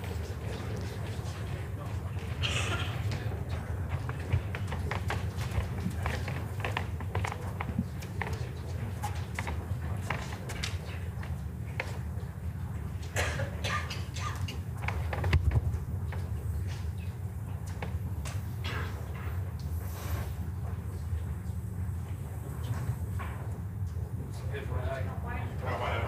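Indoor bowls hall ambience: a steady low hum with scattered light clicks and knocks and faint murmuring voices, and a louder low thump about fifteen seconds in.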